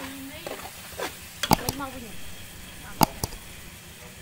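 Metal ladle knocking against an aluminium cooking pot: two sharp clinks about a second and a half apart, with a few softer taps around them, over a low simmer.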